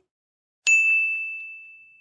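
A single high, bell-like ding about two-thirds of a second in, one clear tone ringing out and fading away over more than a second.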